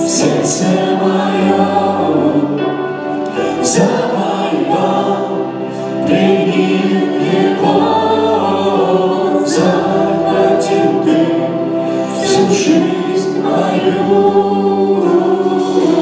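Live worship band playing a song: a woman's lead vocal with men singing along, over acoustic guitar, bass guitar, keyboard and drums.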